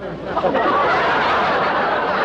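A studio audience laughing.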